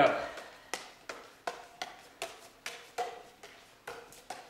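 Juggling clubs being caught and thrown in a three-club back-cross pattern: sharp slaps of the clubs into the hands, about three a second and evenly spaced.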